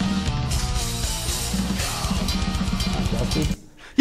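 Recorded metal music with a drum kit playing fast, the drums going into a blast beat, cutting off suddenly near the end as the playback is stopped.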